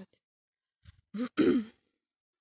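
A woman clearing her throat once, about a second in: a short, harsh sound in two quick parts.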